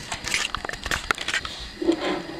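Plastic blister packaging crackling and clicking irregularly as it is handled and cracked open. The crackling stops shortly before the end.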